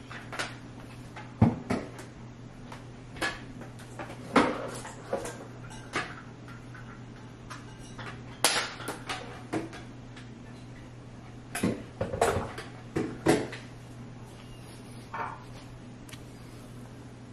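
Scattered light clicks, taps and knocks around a pot of freshly blended soup and its utensils, over a steady low hum. The sounds come at irregular moments, about a dozen in all.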